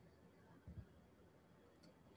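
Near silence: room tone, with one faint low thump a little under a second in.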